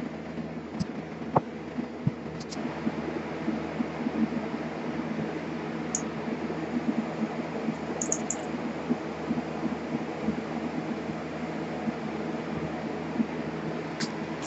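Iron(II) sulfate wash draining in a thin stream from a glass separatory funnel's stopcock into a glass measuring jug, heard as a faint steady trickle over a steady background hum. It is the aqueous layer being run off after a peroxide wash of diethyl ether. There is a faint click about a second in.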